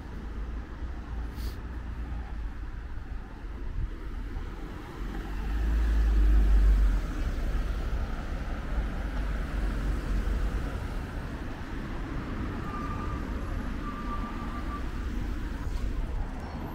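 Road traffic on the street beside the pavement: cars driving past, a steady noisy rumble that swells loudest between about five and seven seconds in.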